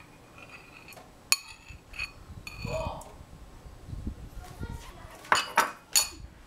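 Metal spoon clinking against a glass and a ceramic bowl while yogurt is spooned in: a series of sharp clinks, a few ringing briefly, the loudest two near the end.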